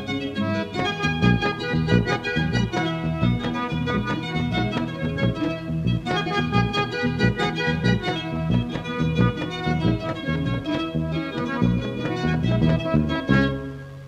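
Instrumental passage of an Andean folk song, with an accordion playing the melody over guitar and alternating bass notes on a steady beat.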